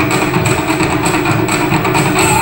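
Ensemble of Japanese taiko drums struck with sticks in a steady, fast beat, heard through a television speaker.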